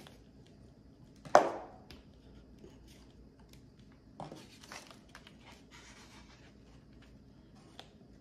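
Small handling sounds of hobby work with wooden dowels, a marker and a foam board: one sharp knock about a second and a half in, then faint scratching and rustling.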